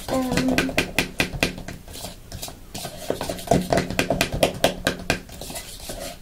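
Cutlery and plastic bowls being handled on a kitchen table: a run of quick, light clicks and knocks.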